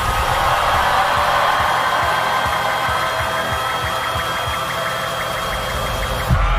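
A theatrical power-up sound effect over the PA: a steady rushing roar with a thin high whine held over it, and low pulses about three times a second beneath.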